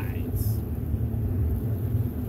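Sea Ray Sea Rayder F16 jet boat's engine running steadily at low speed, a low rumble with no revving, with a brief hiss about half a second in.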